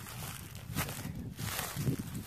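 Footsteps through grass and dry stalks, with irregular rustling.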